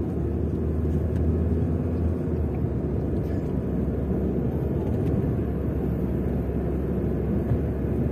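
Steady low rumble of engine and road noise from a moving vehicle cruising along a paved road.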